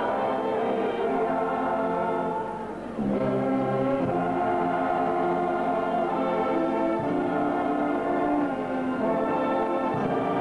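A brass band with a tuba playing slow, sustained chords. Its volume dips briefly before a new chord comes in about three seconds in, and the chord changes again a second later and near the middle.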